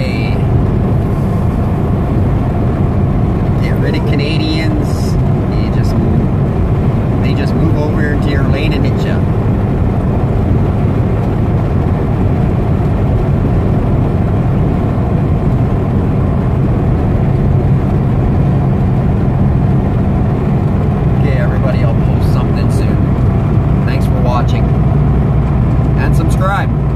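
Semi truck's diesel engine droning steadily from inside the cab, with road and tyre noise underneath.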